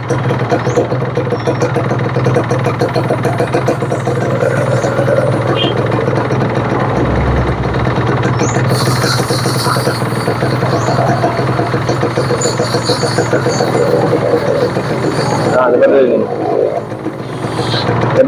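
Kawasaki Ninja R's single-cylinder two-stroke engine idling steadily while its KIPS power-valve adjuster ("Superkips") is turned to find the setting that gives the highest idle speed.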